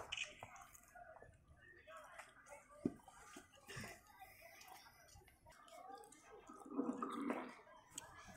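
Faint, distant voices over a quiet background, with a few soft knocks and a slightly louder stretch of talk near the end.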